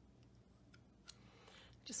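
Faint clicks and light handling noise from a plastic bottle of Distress Paint being squeezed and turned in the hands, with one slightly louder click about a second in.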